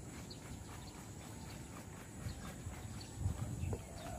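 Faint outdoor background with scattered light ticking clicks and a low rumble, a little louder in the last second or so.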